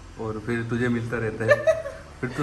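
Speech with chuckling laughter.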